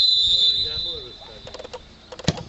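Referee's whistle blown once, a shrill steady tone about a second long that fades out: the signal that the free kick may be taken.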